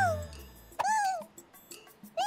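Cartoon bunnycorn creatures making short high-pitched calls, each rising then falling in pitch: one trails off at the start and another comes about a second in.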